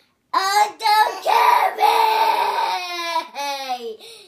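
A young child's loud, high-pitched sing-song shouting in several phrases: a long harsh stretch in the middle, then shorter phrases that fall in pitch.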